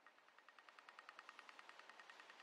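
Faint, rapid ticking of a pedestrian-crossing signal for blind pedestrians (a Dutch 'rateltikker'), about ten ticks a second: the fast rate that signals the walk light is green.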